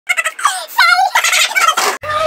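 A man's high-pitched cackling laugh: quick short bursts at first, then squealing rises and falls, cut off suddenly at the end.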